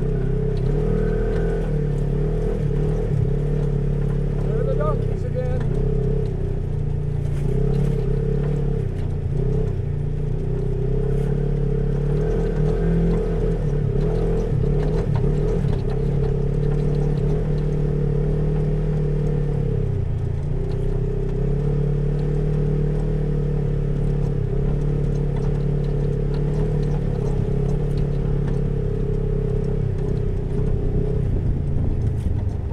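Side-by-side UTV engine running at a steady cruising speed, a constant drone that shifts a little in pitch and dips briefly about twenty seconds in.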